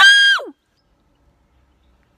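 A girl's short, high-pitched shriek, its pitch sweeping steeply up and then dropping, lasting about half a second.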